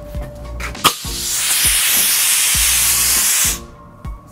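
A click, then a burst of compressed air hissing steadily for about two and a half seconds before cutting off sharply. The air comes from a compressor-fed air line or spray gun.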